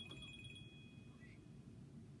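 Near silence with a faint, high ringing tone, like a small chime, that flutters for about half a second and then fades away.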